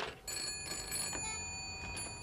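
Telephone bell ringing steadily for an incoming call, starting about a quarter second in.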